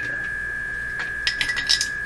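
A steady high-pitched tone from the Hallicrafters S-38 tube receiver's speaker, a signal generator's tone tuned in on the radio, over a low mains hum. Just past the middle comes a quick cluster of small metallic clinks and clicks.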